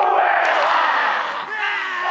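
A rugby team shouting a haka in unison: one long drawn-out group shout 'oh!', then the next shouted phrase starts about one and a half seconds in.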